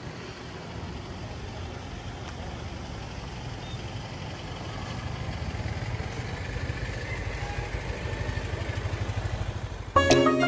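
A motorcycle engine running with a low, even pulse, growing louder over the second half.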